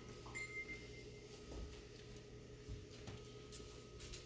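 Quiet kitchen room tone: a faint steady hum, with a brief faint high tone early in and a few soft, faint taps.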